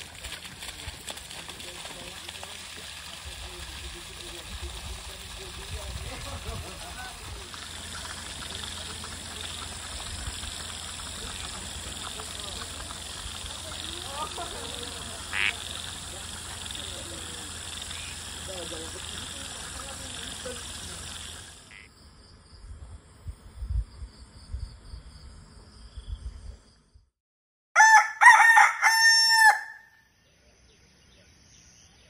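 A rooster crows once near the end, one long call that rises and falls, the loudest sound here. Before it, a steady high-pitched night drone of insects runs until it cuts off about two-thirds of the way in, followed by a few soft low thumps.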